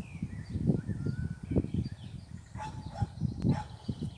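Wind buffeting the microphone in irregular low rumbles, with short chirping bird calls over it.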